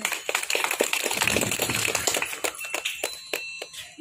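A small group applauding by hand, a dense patter of claps that thins out and stops near the end.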